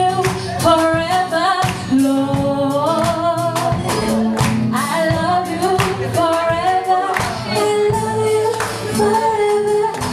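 A woman singing a gospel song live, in long held and gliding notes, backed by a band of keyboard, guitar and drums keeping a steady beat.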